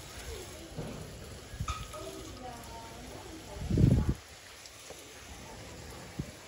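Garden hose spray nozzle hissing steadily as its spray of water falls on bonsai foliage and potting soil. A loud, low, dull rumble lasting about half a second comes about four seconds in.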